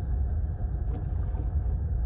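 A steady deep rumble, with nearly all of its weight in the bass: the low drone of a film trailer's closing sound design.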